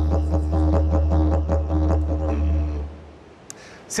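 Didgeridoo playing a deep, steady drone with a regular rhythmic pulse, as background music; it stops about three seconds in.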